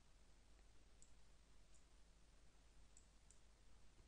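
Near silence: quiet room tone with a low hum, broken by four faint, brief clicks.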